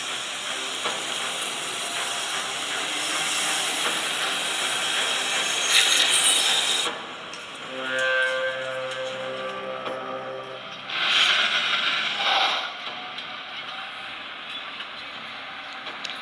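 A demo video's soundtrack played through the Poco X5 Pro's dual stereo speakers: a loud, even rushing of a high-speed train for about seven seconds, then a few seconds of sustained musical tones, then two more brief rushing swells.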